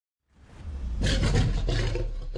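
A lion's roar sound effect with a deep rumble, swelling up from silence over the first second and holding loud.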